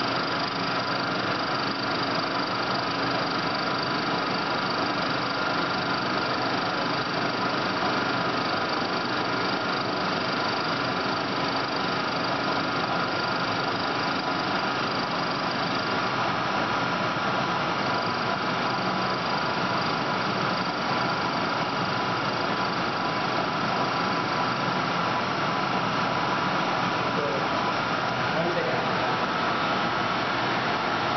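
CNC T100 training lathe running steadily through an automatic plain-turning cycle: spindle and axis drives giving a constant machine hum with steady whines, and a high whine that drops out for a couple of seconds about halfway through.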